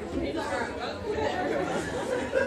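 Many people talking at once: overlapping chatter of students discussing in small groups, with no single voice standing out.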